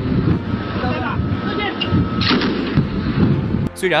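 Ship-mounted heavy machine gun firing rapid bursts of blocking fire at pirate skiffs, stopping suddenly near the end.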